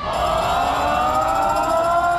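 Marching band brass section (trombones, sousaphones and horns) holding one long sustained chord, its pitch gliding slightly upward.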